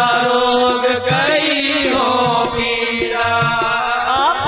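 Sikh kirtan: harmoniums holding sustained chords while voices sing a devotional chant, over a steady low beat.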